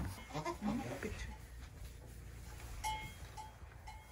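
Goat kids bleating: a wavering call in the first second and a short, higher call about three seconds in.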